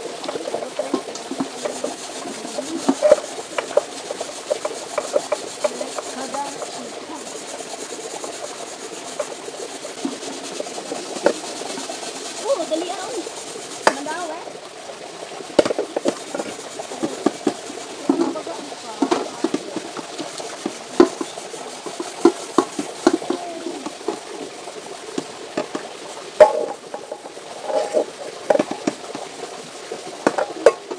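Cooking pots being scrubbed by hand in shallow river water: irregular scraping and rubbing strokes with scattered short knocks of the pots.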